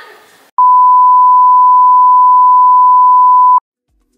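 A loud, steady, single-pitched electronic beep held for about three seconds. It starts about half a second in and cuts off abruptly, with dead silence on either side.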